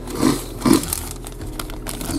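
Two short coughs from a man with sinus trouble, with a plastic bag crinkling in his hands.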